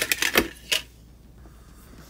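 A quick run of sharp clicks and taps as a plastic PC fan is set down on a wooden workbench and a multimeter is picked up. The handling sounds stop about three-quarters of a second in.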